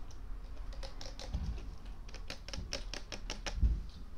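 Close-up eating sounds from a KFC meal: a run of sharp, crisp crackles and clicks, with a low thump near the end.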